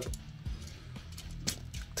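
Quiet background music, with a few faint clicks from the small plastic transforming figure being handled.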